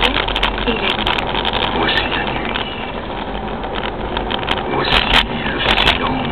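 Vehicle driving along a town street: steady low engine rumble and road noise, with scattered sharp clicks over it.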